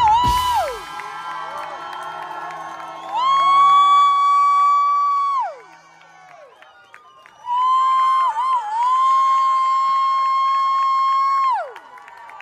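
An electric guitar lets the song's last notes ring out after the band cuts off: two long sustained high notes, each with a short wavering bend, and each ending in a slow downward pitch dive. The crowd cheers underneath.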